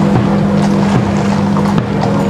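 A military band playing a slow funeral march: held chords that change every half second or so over a steady beat a little under once a second.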